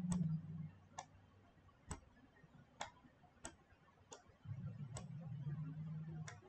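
Computer mouse clicking about seven times, roughly once a second, with a faint low hum underneath at the start and again over the last second and a half.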